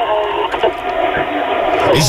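Sound from the far end of a telephone call, thin and cut off in the treble as heard over a phone line: a steady noisy hiss with faint, muffled voices in it.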